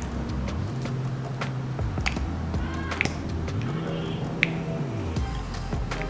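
Soft background music with a slow, low bass line. A few light clicks come from a pump bottle of body oil being pressed.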